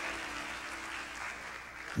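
Church congregation applauding, the applause slowly dying down.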